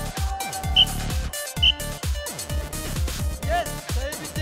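Music with a steady, fast beat, with short synth glides over it.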